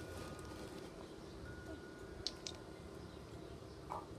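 Quiet outdoor background noise with two short, high clicks a little past two seconds in.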